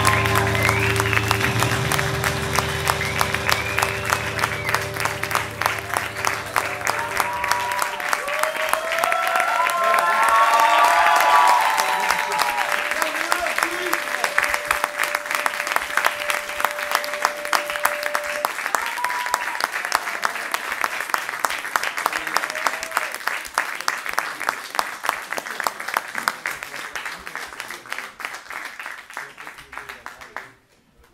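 Audience applauding and calling out after a rock song. The clapping slowly fades. Over the first eight seconds the band's last sustained chord rings out and then stops.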